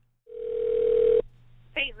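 A telephone line tone: one steady beep about a second long, heard through the phone line as the held call is put through to a new person. It is followed by a voice answering near the end.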